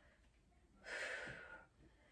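A woman breathing out once, a short breathy rush of air under a second long, starting about a second in, from the effort of holding a side plank.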